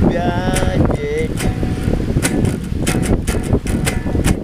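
Steady wind rumble on the microphone. A man's voice sounds for about the first second, then comes a run of sharp irregular clicks.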